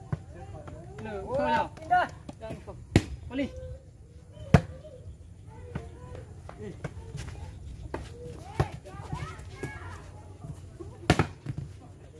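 Sharp smacks of a plastic volleyball being struck: one about three seconds in, a louder one a second and a half later, and another near the end. Players and onlookers shout and talk in between.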